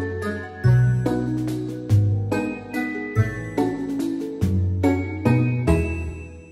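Background instrumental music: a bright melody of struck notes over a bass line.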